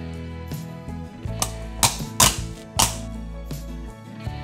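Background music with several sharp plastic clicks in the middle, as the cover plate of a roller-shutter switch is snapped onto its mechanism.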